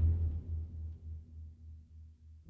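Dark trailer-score music dying away, leaving a faint, low synthesizer bass pulsing about four times a second in steady eighth notes. The cue is playing with its effect sounds muted, so only the bare music is left.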